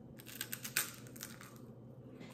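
Puffed rice cake crunching as it is bitten into and chewed: a quick run of crisp crackles lasting about a second and a half.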